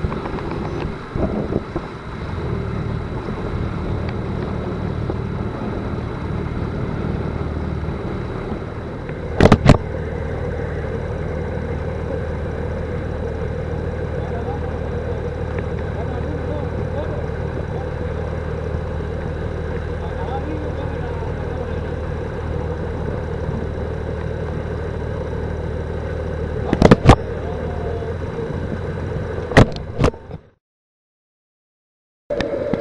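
Inflatable boat's engine running steadily with a low hum, broken a few times by sharp, loud knocks.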